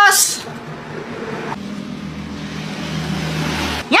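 A motor vehicle engine running with a low steady hum that grows slowly louder and cuts off abruptly near the end.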